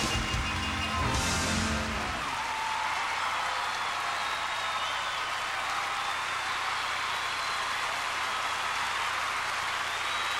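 A band's music ends about two seconds in, and a studio audience applauds and cheers steadily for the rest of the time.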